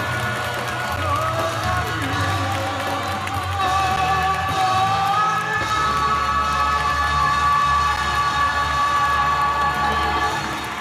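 Live concert recording of a band holding long sustained closing notes of a ballad while the audience cheers.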